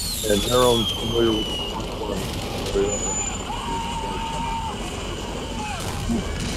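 Soundtrack of virtual-reality PTSD exposure-therapy simulation clips: vehicle noise with a high whine that falls in pitch over the first two seconds, and a steady tone in the middle that drops away near the end. A voice is heard briefly in the first second or so.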